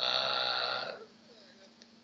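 A man's voice holding a long, level hesitation sound, an "uhh", for about a second mid-sentence.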